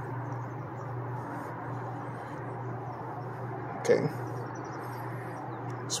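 Steady low hum from an open Dixie Narco 501E soda vending machine, running on mains power while its service menu is being scrolled through. A man says "okay" about four seconds in.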